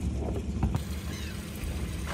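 Twin Suzuki outboard motors on a rigid inflatable boat idling with a steady low rumble.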